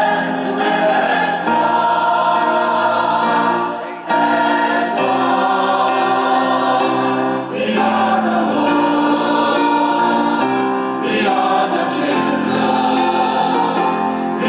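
A choir singing in chords, holding long notes phrase by phrase, with short breaks for breath about four seconds in and again about seven and a half seconds in.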